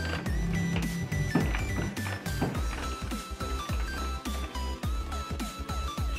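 Electronic arcade-style music from a coin-operated ball-drop pinball machine: a pulsing bass under a simple beeping melody of held notes, with scattered light clicks.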